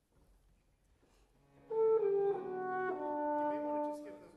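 A wind ensemble plays a few sustained chords. They start loudly about two seconds in, change twice, and are cut off near the end.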